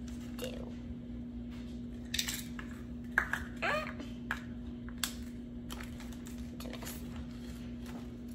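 A spoon scooping and packing brown sugar into a measuring cup: scattered light scrapes, taps and clicks of the spoon against the cup, over a steady low hum.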